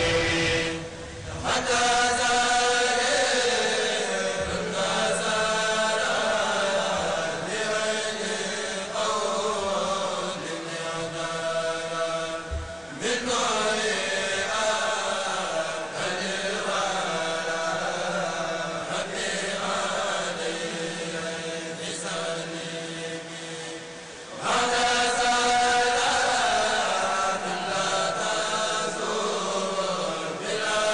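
A group of men chanting Mouride devotional poems (khassaides) in unison through microphones. They sing long, held melodic phrases, with short breaks about a second in, near the middle and about three-quarters of the way through.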